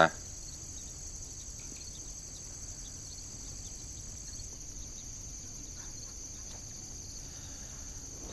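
Crickets chirring in a steady, high-pitched night chorus.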